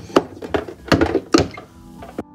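Three sharp knocks with light clatter between them: the top lid of an Andersen A2 home EV charge point being lifted open and its tethered plastic charging connector handled and pulled out from inside.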